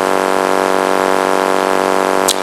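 A loud, steady hum with many evenly spaced overtones, unchanging in pitch and level.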